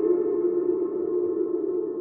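Sustained ambient drone from live electronics and effects-processed guitar in a free improvisation: one steady held tone with overtones above it, slowly fading.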